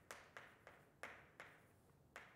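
Chalk writing on a blackboard: about five faint, short taps and clicks at uneven intervals as the chalk strikes and strokes the board.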